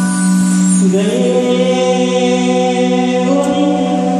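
A male singer singing a slow Hindi film song live into a microphone through a PA, holding long notes, with a slide up in pitch about a second in.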